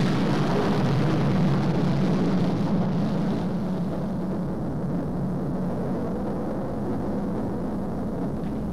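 Loud, steady rushing noise with a low hum beneath it. It starts abruptly and eases off slowly over several seconds.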